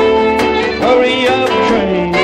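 A live blues band playing an instrumental passage: saxophone and electric guitar over keyboard and drums, with a percussion board being scraped and struck in a steady beat.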